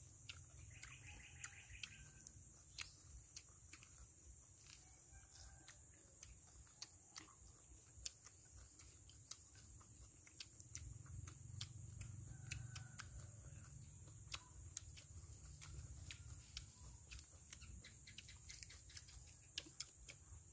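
Faint outdoor ambience: birds chirping now and then over a steady high hiss, with scattered small clicks.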